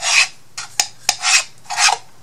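A thin tool scraping along the inside of a laser-cut wooden box in several quick strokes, with sharp clicks between, working out excess glue.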